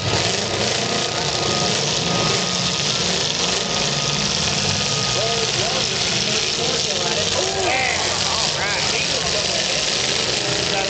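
Demolition derby cars' engines running together in the arena, with a crowd of spectators calling and shouting over them.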